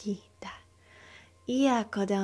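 A woman's voice vocalising channeled light language. After a brief sound at the start and a quiet pause, she voices a drawn-out syllable, 'ya', about one and a half seconds in.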